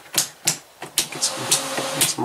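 A quick run of light clicks and knocks, several in two seconds, over a low hiss.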